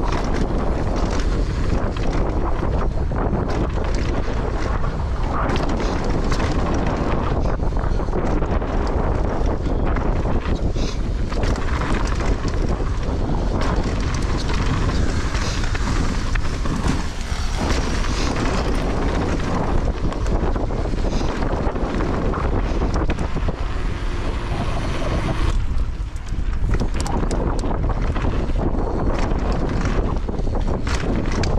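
Wind rushing on the camera microphone as a mountain bike is ridden fast down a dirt trail, with tyre rumble and frequent short clicks and rattles from the bike.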